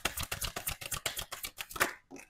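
A tarot deck being shuffled by hand: a fast patter of card clicks, about a dozen a second, that stops near the end.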